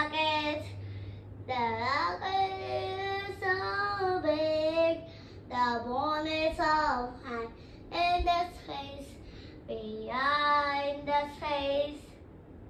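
A young girl singing alone, unaccompanied, in drawn-out wavering notes. The phrases are broken by short pauses, the longest about five seconds in and again near ten seconds.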